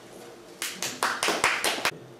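Brief applause from a small audience: a short run of separate hand claps, starting about half a second in and stopping just before the end, at the close of a story reading.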